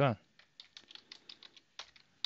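Computer keyboard typing: a run of quick, short keystrokes, about six a second, with one louder key press near the end.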